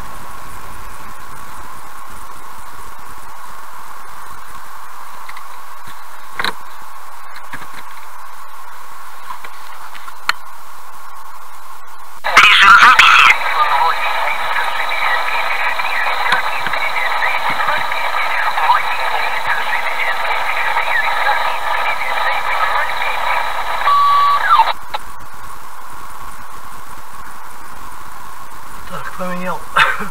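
A radio speaker in the car with a steady hiss; about twelve seconds in, a loud stretch of tinny, garbled voice comes through it and cuts off suddenly some twelve seconds later.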